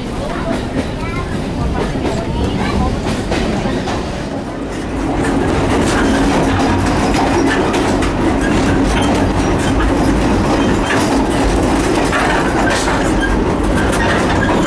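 Running noise inside a moving passenger railway coach: steady rumble and rattle of the car body with wheels clattering over the rails. It grows louder about five seconds in, as the end door to the vestibule between cars is opened.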